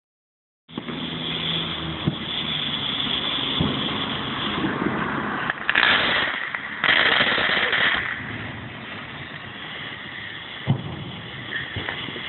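Ground firework fountain hissing and crackling as it throws sparks, surging louder twice midway through, then dying down, with a single sharp pop near the end.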